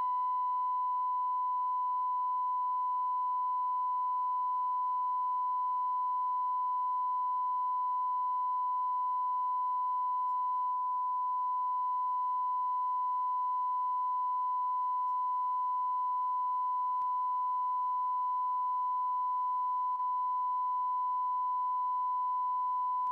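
Steady 1 kHz line-up test tone played with the colour bars, one unbroken beep-like tone at even level, with faint tape hiss underneath.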